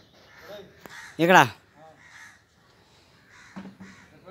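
Crows cawing faintly several times, with a man's short loud shout about a second in.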